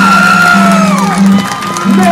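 Music playing, with a crowd cheering and whooping over it; one whoop slides down in pitch about a second in.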